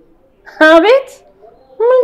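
A woman's voice making two short, pitched exclamations. The first comes about half a second in and rises in pitch; the second starts near the end.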